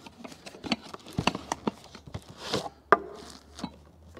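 Cardboard box being handled and the nested hard-anodised aluminium pot set slid out of it and set down: rustling and scraping of cardboard, many light taps and clicks, and one sharper knock about three seconds in.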